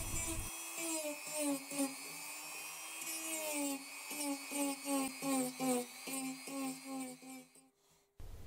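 Dremel Multi rotary tool with a small cylindrical bit engraving a recess into an MDF board: a steady high motor whine whose pitch dips each time the bit is pressed into the board, in quick repeated passes during the second half, stopping just before the end.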